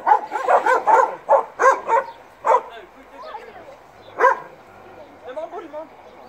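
People laughing in quick repeated bursts for the first two seconds, then a couple of single louder bursts and fainter high squeaky sounds near the end.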